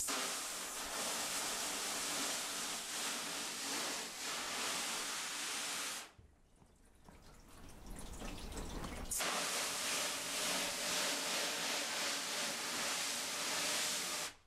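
Garden-hose spray hitting a silkscreen in a steel washout booth, washing the unexposed photo emulsion out of the design. The steady hiss of water cuts off for about three seconds in the middle, then resumes.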